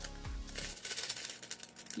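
A small plastic packet of resin diamond-painting drills crinkling as it is handled, the drills clicking and rattling inside. Background music sits underneath and fades out less than a second in.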